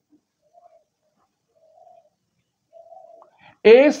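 Faint bird cooing: three soft low notes about a second apart, the later ones longer, then a man's voice begins near the end.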